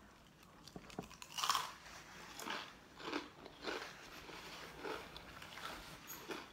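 Close-up crunching and chewing of crispy, batter-fried chicken on a stick: a handful of short, irregular crunches as the fried coating is bitten and chewed.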